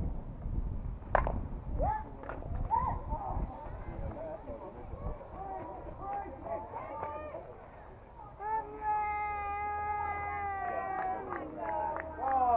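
A softball bat hits the ball once, a sharp crack about a second in. Players shout and call out afterwards, with one long held call near the end.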